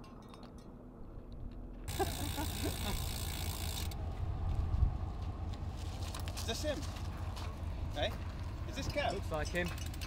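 Faint roadside outdoor noise: a low rumble and hiss that grow louder about two seconds in, with indistinct voices now and then.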